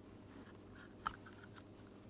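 Faint handling sounds from a small SSD docking station and its cable: one sharp click about a second in, followed by a few lighter clicks.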